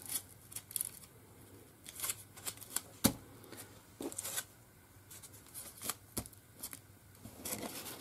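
Scattered rustles and light taps of paper and cardstock being handled on a cutting mat as a paper flower is set on a card and lifted off again, with one sharp click about three seconds in.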